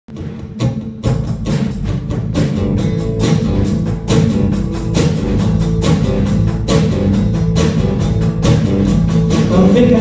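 Live instrumental intro of a rock song: acoustic guitar strummed over a drum kit keeping a steady beat.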